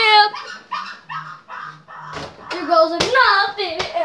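A child's high-pitched wordless vocal sounds, short and broken, with a couple of sharp thumps about three seconds in and just before the end.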